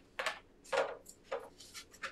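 Four short, soft rustling scrapes about half a second apart: things being handled during a pause in the talk.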